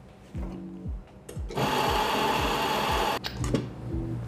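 Espresso-bar equipment runs in one loud, steady burst of about a second and a half, starting and stopping abruptly, over quiet background music.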